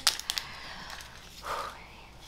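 Handling noise: a sharp click, a few quieter clicks just after it, then a soft rustle about a second and a half in.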